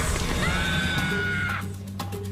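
A single high-pitched shriek, rising at its start and held for about a second before it cuts off, over dramatic music.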